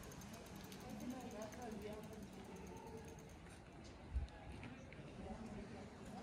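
Faint voices over the fast, even ticking of a coasting bicycle's freewheel, which stops a little past the middle. A short low thump comes about four seconds in.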